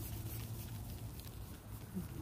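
A plastic sandwich bag rubbed by hand over freshly clay-barred car paint, giving only a faint soft rustle with no gritty, sandpaper-like sound: the clay bar has removed most of the bonded contamination. A low steady hum runs underneath.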